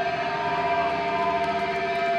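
Electric guitar feedback through a distorted amplifier: a steady, sustained whine of several held tones that neither wavers nor fades.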